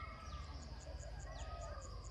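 Birds calling in the background. A long, rooster-like call comes near the start, with short falling whistles about once a second. Behind them is a faint, high chirp repeating about five times a second.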